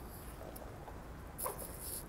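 Quiet room tone. Near the end comes one short vocal sound falling in pitch, with a breath, just before speech resumes.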